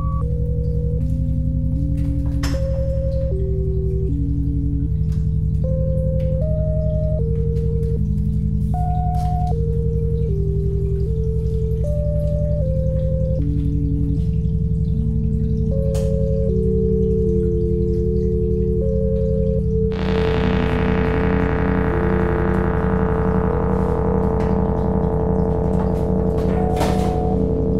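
Electronic synthesizer music: a slow melody of pure, whistle-like notes stepping up and down over a held tone and a low bass drone. About twenty seconds in, a brighter, buzzier synth tone swells in over it.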